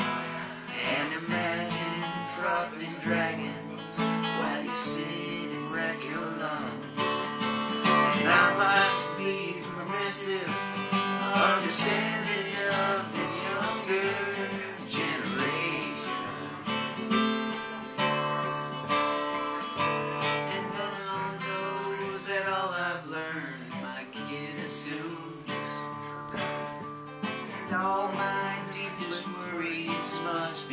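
Acoustic guitar strummed and picked through an instrumental stretch of a song.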